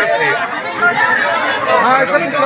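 Several people talking at once, overlapping excited speech and chatter.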